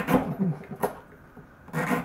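Kitchen knife slicing through a tough, fibrous palm frond down onto an end-grain wooden cutting board: a slicing cut right at the start, a sharp tap of the blade on the wood a little under a second in, and another cut beginning near the end.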